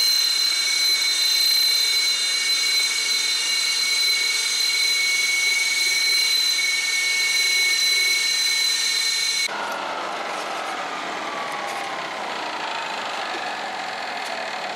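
Su-30SM fighter's twin turbofan engines running on the ground: a loud steady rush with two high whining tones, which cuts off abruptly about nine and a half seconds in. After the cut a quieter jet engine whine falls steadily in pitch.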